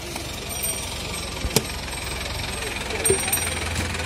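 Street background noise: a steady low engine rumble from passing motor traffic, with a single sharp click about a second and a half in.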